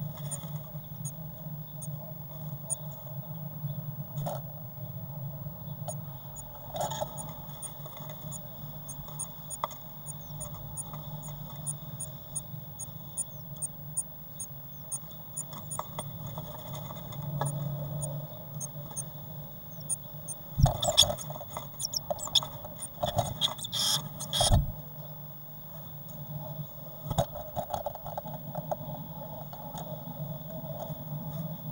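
A blue tit moving about inside a wooden nest box: thin, high-pitched cheeps repeat two or three times a second for a long stretch. About two thirds of the way through comes a burst of scraping and knocking as the bird shifts in the nest material and bumps against the box. A steady low hum runs underneath throughout.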